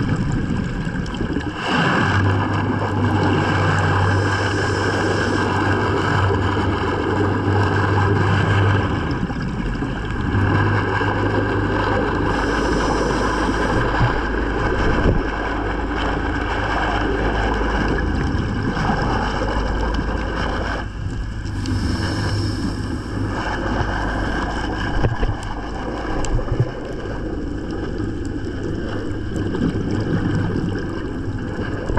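Underwater sound on a scuba dive: a steady rushing noise with a low hum from a boat's engine carried through the water, the hum dropping out briefly now and then. Twice, about 12 and 21 seconds in, a burst of hiss rises over it, like a diver's exhaled bubbles.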